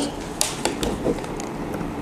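Scattered light clicks and knocks of hands handling a metal-cased industrial network switch and a fiber patch cord on a tabletop.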